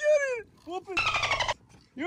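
Excited shouting and calling from anglers fighting a big fish on rod and reel, with a short, rapidly pulsing buzzy sound about a second in.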